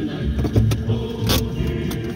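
Music playing over the running noise of a car being driven, with a few clicks and a sharp short rattle a little over a second in.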